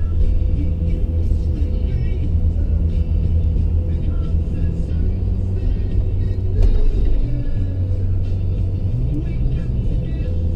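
Steady low rumble of a car driving, heard from inside the cabin, with music playing over it. A single sharp knock comes about two-thirds of the way through.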